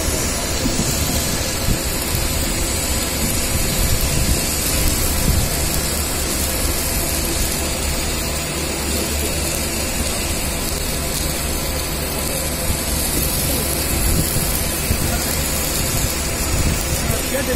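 Steady, even machine noise from a submerged arc welding station running a seam on a large steel shell, with no breaks or sudden events.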